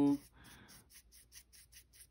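Bristles of a new acrylic nail brush stroked back and forth on a paper towel to work the factory starch out. This is part of breaking the brush in, and it sounds as faint, quick, scratchy strokes, about six or seven a second.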